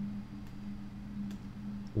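Faint taps of a pen stylus on a tablet screen, twice, over a low steady hum.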